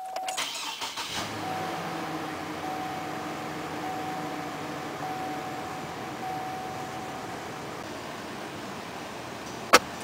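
A Chevrolet Colorado's 3.7 L Vortec inline-five cranks briefly and catches within about a second, a cold start after four days unused, then idles steadily at about 1,200 rpm. A door-ajar warning chime sounds on and off over the first several seconds, and a sharp click comes near the end.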